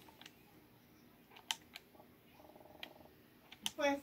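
Faint handling noise from a phone being moved: a few scattered light clicks and knocks over a quiet room background, with a short low buzz about halfway through. A voice starts speaking right at the end.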